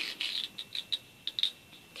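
Elastic cord being pulled through a notebook cover's holes and drawn across paper, with hands brushing the sheet: a string of short, light scratchy rustles.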